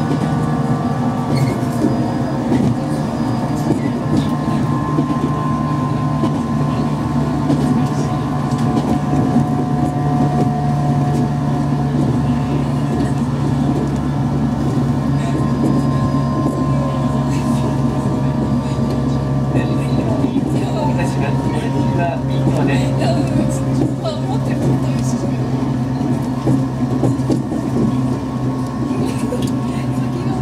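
JR East 115 series electric multiple unit running, heard from the cab: a steady rumble of wheels on rail with a constant low hum and a faint higher whine from the traction motors.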